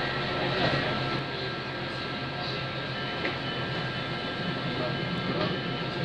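Freight train of hopper wagons rolling slowly through a station, a steady rumble with several steady whining tones held throughout, and a few light clicks.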